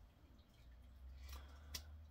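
Near silence: room tone with a faint low hum and one soft click late on.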